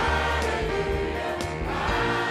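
A large church choir singing a gospel worship song, accompanied by a live band of drums, piano and bass.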